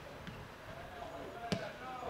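A single sharp thud of a football being struck about one and a half seconds in, over faint distant shouting from players.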